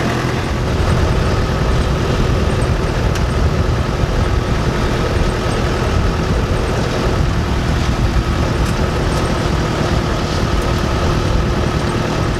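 Safari jeep's engine running steadily as it drives along a dirt track, heard from on board with the low rumble of the ride.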